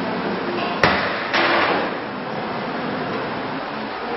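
Two sharp knocks about half a second apart, the second with a short ringing tail, over steady background machine or ventilation noise.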